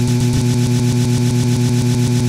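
A music track cut to a very short loop in a DJ app, repeating a tiny slice many times a second so that it becomes a steady buzzing drone.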